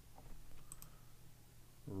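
A few faint computer keyboard key clicks in quick succession a little under a second in, over a low steady room hum.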